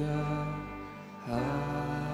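Live worship band playing a slow passage of sustained chords on acoustic and electric guitar. The music eases off for a moment and comes back with a new chord a little over a second in.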